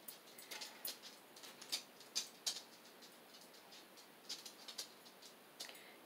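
Faint, scattered clicks and rattles of small beads being handled and threaded onto fishing line.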